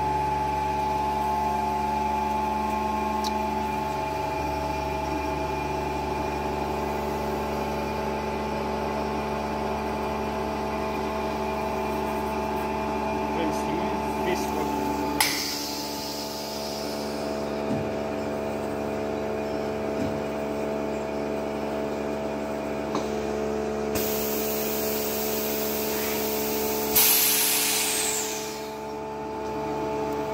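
Henkelman Falcon 80 chamber vacuum packer running a cycle: a steady hum from its vacuum pump while the chamber is evacuated, then, about halfway, a sharp click and a burst of hiss as the cycle moves on. Near the end a louder hiss of air rushes back into the chamber and dies away as the pressure evens out.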